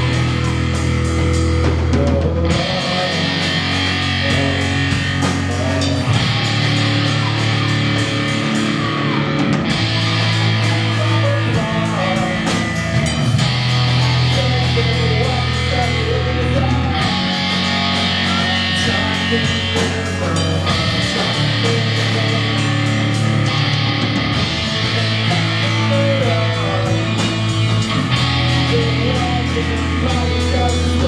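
Live rock band playing: distorted electric guitars, bass and a drum kit with steady cymbal hits, the chords changing about every three and a half seconds.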